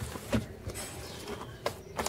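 Clothes being handled in a laundry tub: soft fabric rustling with a few light, irregular taps, the sharpest a click near the end.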